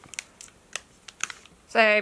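Light, irregular clicks and taps of Pokémon trading cards and a foil booster pack being handled, about nine in under two seconds. A voice says "So" near the end.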